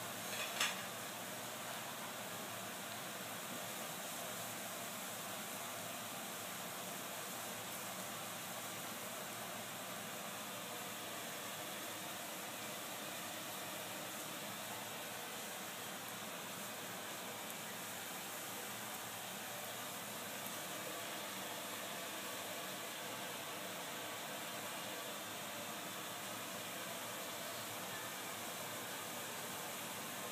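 Steady, even background hiss, with one brief sharp crackle about half a second in.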